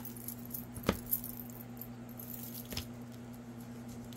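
A steady low electrical hum with a few faint clicks and light rattles, the sharpest about a second in.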